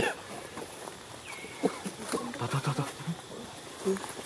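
Macaque calls: a thin, high squeal about a second and a half in, then a quick run of short low grunts, with a short call near the end.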